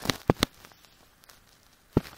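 Computer mouse button clicks: a quick cluster of three or four in the first half second, and one more near the end, over faint room tone.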